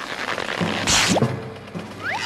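Cartoon soundtrack: background music with a sudden swish about a second in and short rising whistle-like sound effects.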